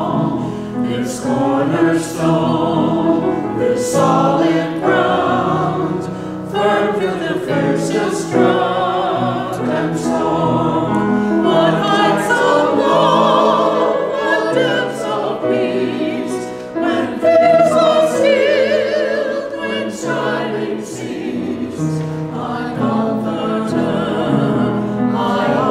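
Small mixed choir of men's and women's voices singing continuously, with vibrato on held notes.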